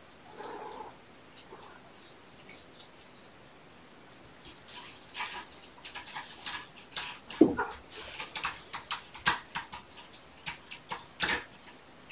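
A cat gives one short meow about seven seconds in. Around it runs a string of light, scratchy clicks and rustles as the kittens move about on the carpet and toys.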